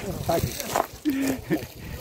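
Voices of a group of people calling to one another, one saying "hadi" ("come on"), with a short drawn-out call about a second in.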